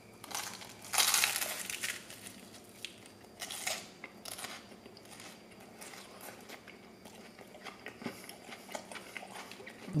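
Crunching bites and chewing of a crisp beer-battered, deep-fried seafood-mushroom 'fish' fillet. The loudest crunch comes about a second in, followed by scattered smaller crunches and chews.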